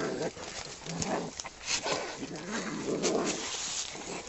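Two cats fighting: low, wavering growls and yowls broken by sharp hisses, the loudest stretch of hissing and yowling near the end.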